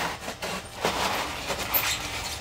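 Hands rubbing and handling a Depron foam tube taped with masking-tape strips: a dry scraping rustle in two stretches, the second starting just under a second in.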